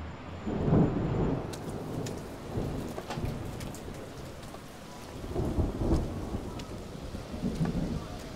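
Rain falling on a city street, with deep low rumbles swelling about half a second in, again around five and a half seconds, and near the end, and scattered light ticks of drops.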